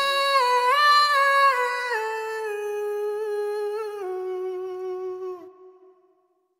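A singer's voice humming a slow melody with no instruments, closing a reggae song. It holds a few long notes that step down in pitch and fades out about five and a half seconds in.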